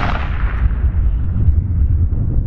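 Echo of a rifle shot fired just before, a 175-grain .308-class load, rolling back and fading away over about a second and a half. A steady low rumble of wind on the microphone runs underneath.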